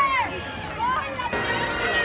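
Christmas parade music from loudspeakers: a sung note held and falling away just after the start, a short sung phrase about a second in, then steadily held notes, over the chatter of a crowd of onlookers.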